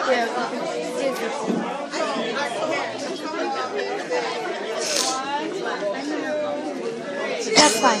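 Several people talking at once in the background, their words indistinct, with a short bump near the end.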